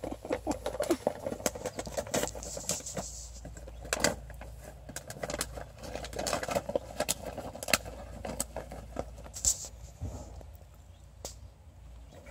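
Puppy rummaging in a gift bag and pulling at toy packaging: rustling and crinkling with many sharp crackles, heavier in bursts.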